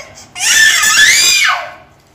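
A toddler crying: one loud, high-pitched wail about a second long that rises in pitch and then drops away.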